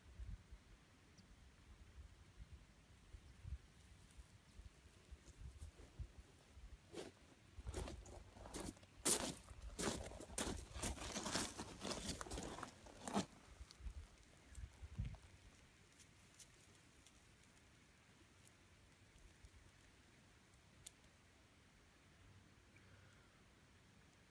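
Footsteps and shifting weight crunching on loose river gravel, a dense run of sharp crunches in the middle of an otherwise quiet stretch.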